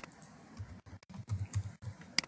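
Computer keyboard being typed on: a sharp click at the start, then a quick run of about six soft keystrokes as a six-digit number is entered.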